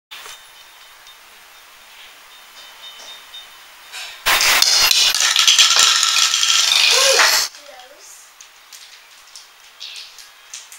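Hollow plastic toy bowling pins knocked down by a plastic ball, clattering and rolling on a tiled floor. The clatter starts suddenly about four seconds in, lasts about three seconds, and is followed by a few light ticks as the pins settle.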